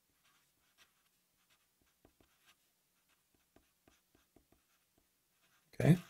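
Felt-tip Sharpie marker writing on paper: a string of faint, short pen strokes as a line of handwriting goes down.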